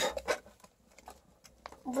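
Wet cat-food pouch crinkling as food is squeezed out of it into a plastic bowl: a few soft crackles in the first half second, then only faint ticks.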